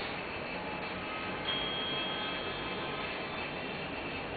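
Room tone: a steady hiss of background noise, with a faint high tone for about a second near the middle.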